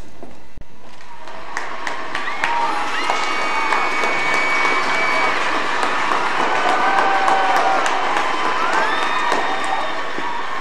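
Audience applauding and cheering, with whoops and shouts over the clapping. The sound drops out for an instant just under a second in, then the applause builds up and stays strong.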